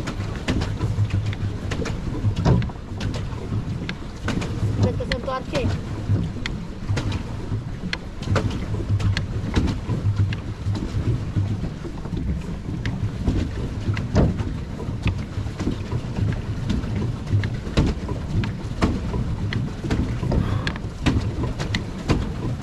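Swan pedal boat under way: the paddle wheel churns the water with a low, pulsing rumble, and the pedal drive knocks and clicks irregularly, with wind on the microphone.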